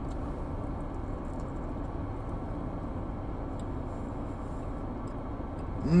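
Steady low rumble in a car's cabin, with a few faint clicks from chewing.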